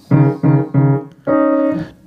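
Piano notes on the D between the two black keys: three short notes, then a higher D held for about half a second, an octave apart.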